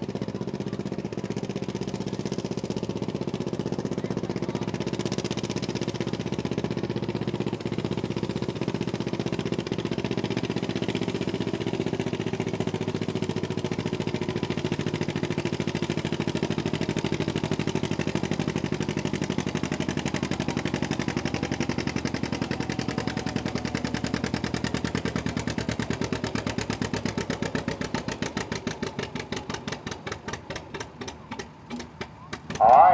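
1937 John Deere two-cylinder tractor engine running hard under load while pulling a weight-transfer sled. Near the end it slows and quietens, its separate exhaust beats coming through as the sled brings the tractor to a stop.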